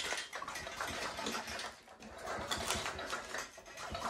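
Motorized bicycle's engine and chain being turned over by hand to check for spark at the removed plug: irregular mechanical clicking and ratcheting, busier in the second half.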